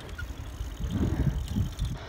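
Bicycle rolling over rough, cracked asphalt, with wind buffeting the microphone: an uneven low rumble.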